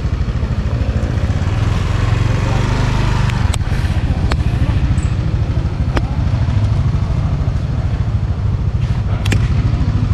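A small engine running steadily, with a few sharp clicks over it.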